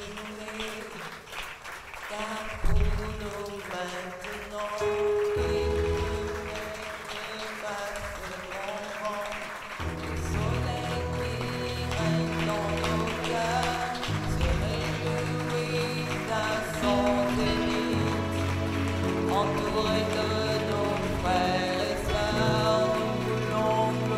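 Church keyboard music: sustained chords that change every couple of seconds over a steady bass line, with congregation applause underneath.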